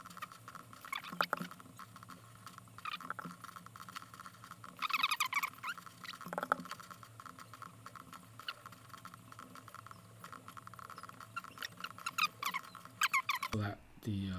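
Computer keyboard keys and mouse buttons clicking irregularly as numbers are typed and entered, with a quick run of keystrokes about five seconds in and another near the end.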